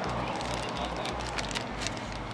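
Plastic bag crinkling and crackling as it is cut open with a small knife: a few short sharp crackles over steady outdoor background noise.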